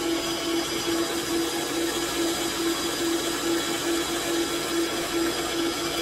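KitchenAid Classic Plus stand mixer running at a raised speed, its motor giving a steady hum as the whisk beats a mascarpone and egg-yolk cream.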